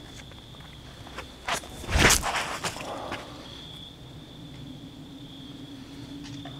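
Footsteps of a disc golfer's run-up and drive from a paved tee pad: a few light steps, a louder burst of steps about two seconds in, then a few softer ones.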